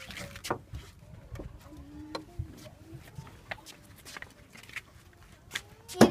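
Scattered light clicks and knocks from a Nissan NV van's rear-door check strap being unlatched by hand so the door can swing fully open.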